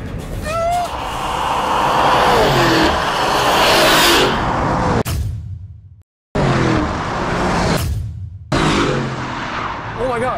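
Lamborghini Urus and Rivian R1S passing at full throttle down a drag strip: a rising rush of engine and tyre noise, with engine notes falling in pitch as they go by. The sound cuts out abruptly twice and comes back.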